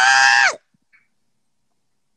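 A woman's voice calling the name "Vincent!" loudly, the last syllable held on one high pitch and then dropping away about half a second in.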